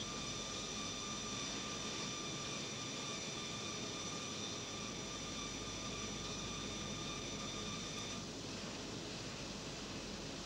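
CalComp 565 drum plotter running as it draws, a steady whir and hiss with a thin high whine that stops about eight seconds in.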